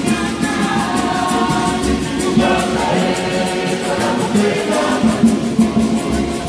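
A choir of women singing together, with a steady beat running under the voices.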